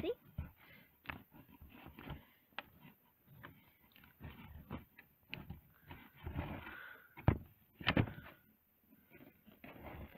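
Hands handling a wooden pull-along toy and its cardboard packaging while picking packing strings off its wheel: scattered small clicks, knocks and rustling, with two sharper knocks about seven and eight seconds in.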